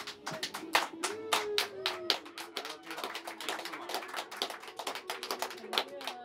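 A small group applauding, with quick, uneven hand claps.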